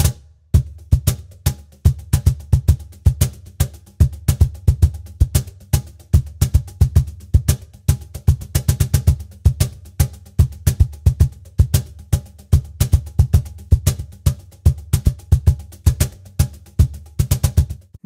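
Meinl cajon played in a continuous groove of deep bass tones and sharp slaps, several strikes a second, with the bass strokes loudest. It is picked up by a Shure SM57 dynamic microphone placed at the cajon's rear sound hole, and the groove stops just before the end.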